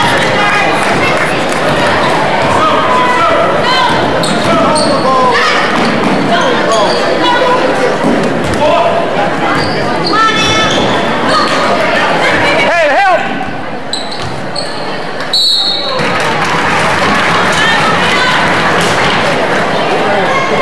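Basketball bouncing on a hardwood gym floor during live play, over steady crowd chatter from the bleachers.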